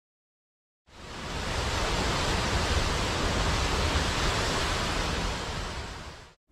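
A steady rushing noise with a low rumble, fading in about a second in and fading away near the end.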